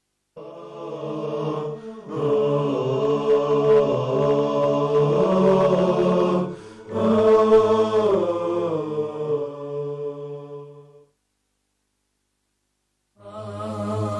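A vocal chant for a TV break ident: layered voices hold long notes that slide between pitches, dip briefly in the middle, and stop about eleven seconds in. After two seconds of silence, another piece of music starts near the end.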